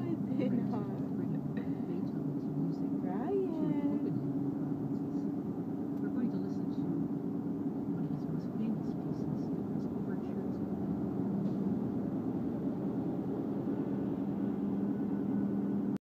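Steady engine and road drone of a moving car, heard from inside the cabin, with a low hum throughout. A voice is heard briefly near the start and again about four seconds in.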